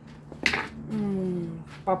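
A brief sharp noise about half a second in, then a woman's hummed "mm" sliding slightly down in pitch, and the start of her speech near the end.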